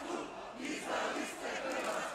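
Large crowd of demonstrators shouting together, the many voices swelling about half a second in.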